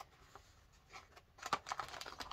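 Tea advent calendar packaging being opened by hand: nearly quiet at first, then a few soft clicks and rustles from about a second and a half in.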